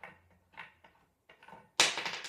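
Light clicks and knocks of the wooden parts of a flat-pack footstool being handled while a loose bolt is undone, then a sudden, much louder noise near the end.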